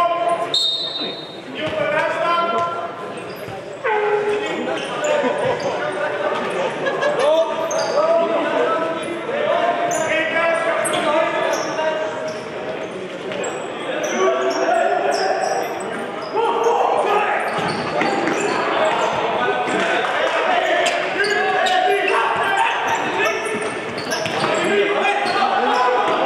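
Live futsal play in an echoing sports hall: many short squeaks of indoor shoes on the court floor, the ball being kicked and bouncing, and players calling out.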